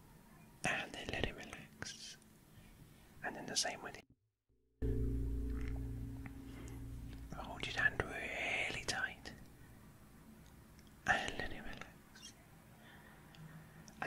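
Soft close-miked whispering and breathing in short bursts. About four seconds in the sound drops out briefly and comes back as a low steady hum that fades away over the next few seconds.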